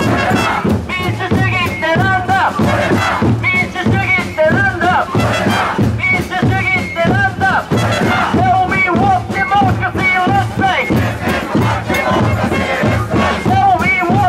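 Protest crowd chanting slogans, led by a man shouting into a microphone, over a steady drumbeat from a small drum group.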